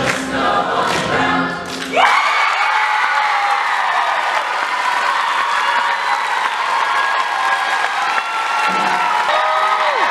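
Mixed teenage show choir ending a song: rhythmic singing with a beat for about two seconds, then a sharp scoop up into one long held final chord. Audience applause and cheering build underneath it and carry on as the chord ends near the close.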